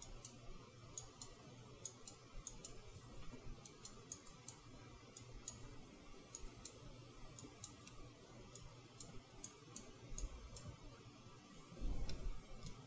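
Faint, irregular clicks from a computer mouse and keyboard, about two a second, over a low steady room hum.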